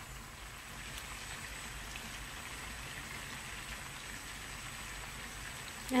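Garlic butter sauce gently sizzling around lobster in a nonstick pan on low heat: a steady, faint fine crackle.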